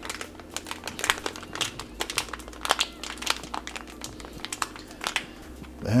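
A foil-laminate MRE drink pouch crinkles as fingers press its top closed, with many small, irregular crackles and clicks.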